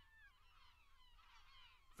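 Near silence, with only faint high, wavering cries in the background.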